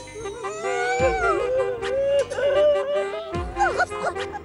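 Dramatic background music: a held drone under a gliding, bending melody line, with deep drum hits that fall in pitch about a second in and again near the end.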